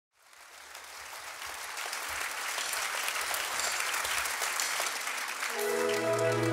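Concert audience applauding, the clapping fading in from silence over the first couple of seconds. Near the end the band, with its string section, comes in on a held chord.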